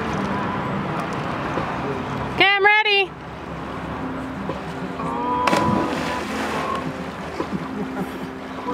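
A steady rush of river water under the bridge, with a loud, warbling yell about two and a half seconds in. A few seconds later, a short sharp splash as a boy jumping from the bridge hits the river, with brief shouts around it.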